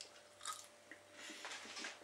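Faint chewing of a mouthful of chips, with a few soft, irregular mouth sounds.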